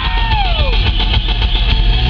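Live rock band playing loudly: electric guitar and bass guitar over drums, with a note sliding down in pitch in the first second.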